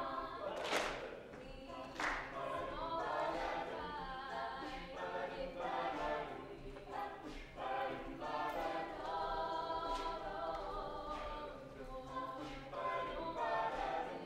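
Mixed-voice a cappella group singing in harmony, with two sharp beats in the first two seconds before the voices settle into held chords.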